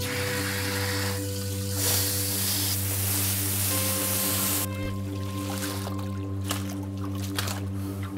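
Water spraying from a hose nozzle onto dry hemp stalks in a large metal pot, a steady hiss that cuts off suddenly about halfway through, over background music.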